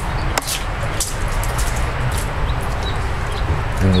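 Steady outdoor background noise with a low hum, and a few faint, short high-pitched clicks or chirps.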